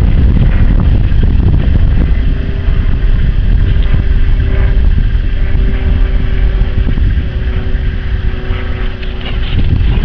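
Wind buffeting the microphone, loud and gusty. From about two seconds in, a faint steady hum runs underneath it.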